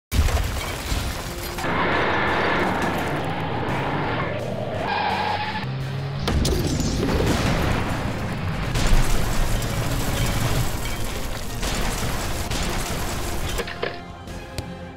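Action-movie style soundtrack: dramatic music mixed with sound effects of booms, crashes and shattering, with a sudden loud start and the loudest hit about nine seconds in.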